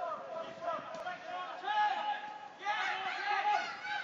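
Men's voices calling and shouting across a football pitch, loudest a little before the end, with a single sharp knock about a second in.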